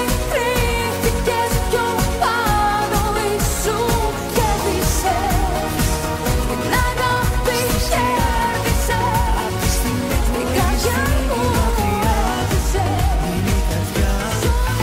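Greek pop music with a steady beat and a wavering, ornamented melody line.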